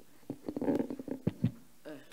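Handling noise on a microphone: a cluster of knocks and low rumbling lasting about a second, then a man's short hesitant "euh" near the end.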